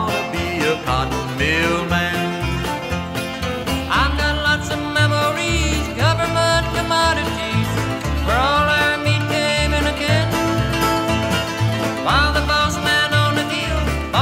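Bluegrass band playing with banjo, guitar and bass on a steady alternating bass beat, with sliding melody notes recurring every two seconds or so.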